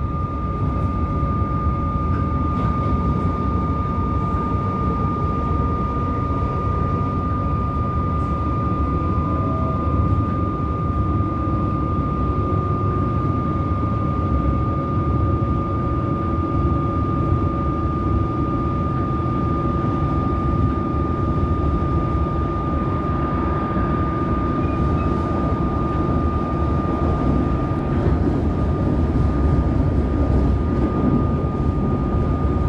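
Electric suburban train running at speed, heard from inside the carriage: a steady rumble of wheels on rails with a constant high whine throughout, and a lower hum joining about a third of the way in.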